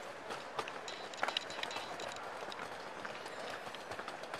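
Footsteps on a hard terminal floor, irregular sharp clicks over the steady murmur of a busy airport hall.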